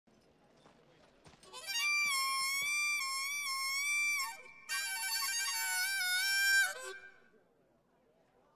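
Harmonica played into a microphone: two long held chords, the second lower than the first, each with a slight bend at its start and end.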